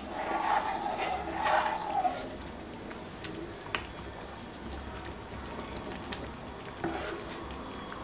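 Metal ladle stirring and scraping through thick rava pongal in an iron kadai, in strokes that are loudest in the first two seconds, with a couple of sharp clinks of ladle on pan later.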